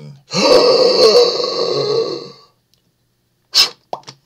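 A loud, drawn-out laugh of about two seconds from a man's voice, with a short sharp burst of sound near the end.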